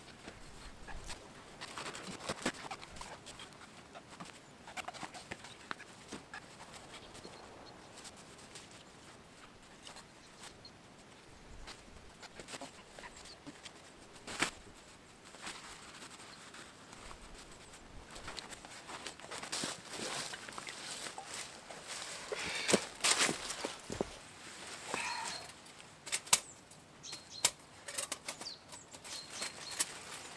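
Camping gear being packed: rustling and flapping of nylon tent and stuff-sack fabric, with scattered knocks and the crunch of dry leaf litter underfoot. The handling noise is loudest in a busy run about two-thirds of the way through.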